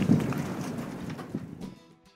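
Wind buffeting the camera microphone with rumbling harbour ambience, fading steadily away. Faint guitar music comes in near the end.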